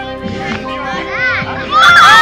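Children's voices calling out over background music; near the end the children break into a sudden, loud burst of shouting.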